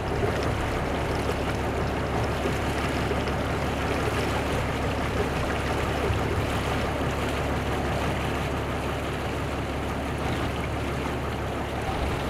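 Steady wash of sea water with a low, even hum underneath.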